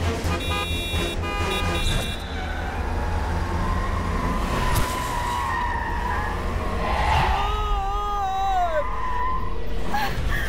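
Film soundtrack of police SUVs driving off, engines running with a steady low rumble and a short musical sting at the start. From about the middle on, a siren wails with a rising and falling tone.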